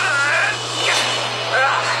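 A man's long, straining yell, with a rushing noise in the middle.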